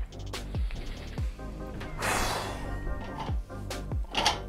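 Background music with a steady beat of deep, falling bass hits and a cymbal-like swell about halfway through.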